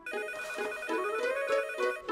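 Electronic telephone ringtone playing a short melody of stepped tones.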